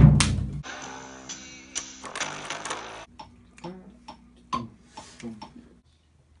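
Drum kit in a studio: a hit rings out with a cymbal wash for about three seconds, then a few light, scattered taps.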